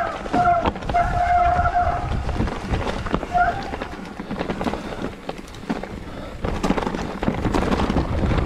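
Mountain bike rolling down a rough dirt and rock trail: tyres crunching over ground and stones, the bike rattling, and wind on the handlebar camera's microphone. Over the first two seconds the brakes give several short squeals, then one more about three and a half seconds in.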